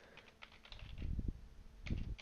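Keystrokes on a computer keyboard as a password is typed: a quick run of key presses about a second in, then a single louder keystroke near the end.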